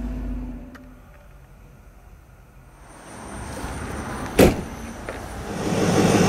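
A low hum dies away about a second in, then a quiet stretch. A single sharp thump comes about four seconds in, followed by a steady rush of road traffic that grows louder near the end.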